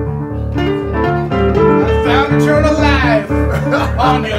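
A band playing: an electric guitar picked with the fingers over a repeating pattern of low bass notes, with a bending, sliding lead line in the second half.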